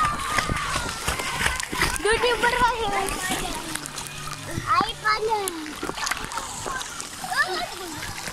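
Pool water splashing and sloshing around children wading in shallow water, with children's high voices calling out several times over it.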